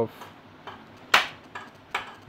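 A single sharp knock about a second in, the loudest sound here, and a fainter click near the end, against low workshop background.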